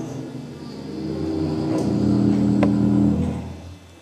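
Prepared string quartet holding low, sustained drone tones that swell and then fade away shortly before the end.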